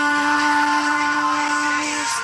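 A female singer holds one long, steady note on the song's final word, ending near the end.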